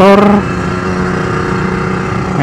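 Yamaha RXZ's two-stroke single-cylinder engine running at a steady pitch under way, over road and wind noise, freshly serviced with the head cleaned, the reed valves checked and the tune reset. A word of speech ends right at the start.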